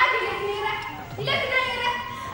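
Speech only: a high-pitched voice speaking Tigrinya lines, with a brief pause about a second in.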